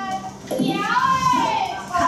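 Children's voices from a video of a children's class playing on the projector, with one high voice drawn out, rising and then falling, for about a second in the middle.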